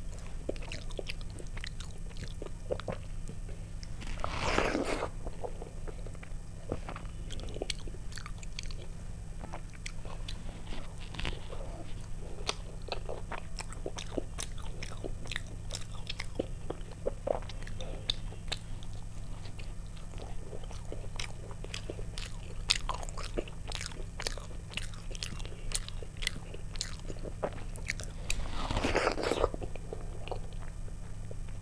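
Close-miked eating of rice and fried fritters by hand: chewing with wet mouth clicks and smacks, with soft crunches of fried batter. Two longer, louder rushes of sound come a few seconds in and near the end, over a steady low hum.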